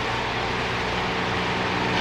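Steady background noise of an old live lecture recording: an even hiss with a low hum underneath and no speech.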